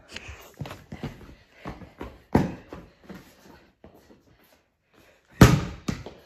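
Basketball bouncing on a hard floor: a quick run of light bounces, then a pause and one much harder bounce near the end.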